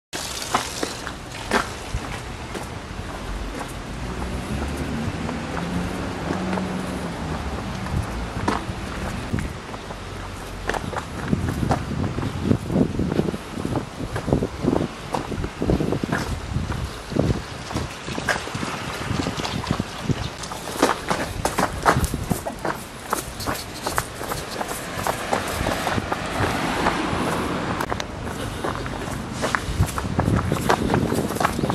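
Irregular footfalls of a person running on an asphalt street, mixed with knocks from the handheld camera rig, over a steady outdoor rumble; the footfalls and knocks grow more frequent after the first third.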